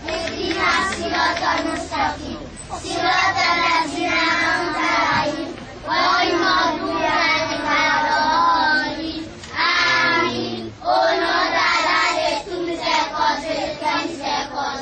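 A group of young children singing together in unison, in short phrases with brief breaks between them.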